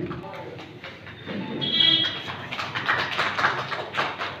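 A small audience clapping, the claps growing denser about halfway through, with voices mixed in.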